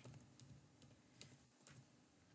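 Faint computer keyboard typing: a handful of scattered, separate keystroke clicks as a short text entry is typed.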